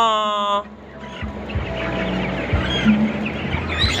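A flock of young white broiler chickens cheeping and clucking as they crowd around a feeder, with many short high chirps overlapping. A person's drawn-out call ends about half a second in.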